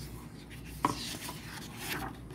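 Paper rustling as a picture book's page is turned by hand, with a single soft tap a little under a second in.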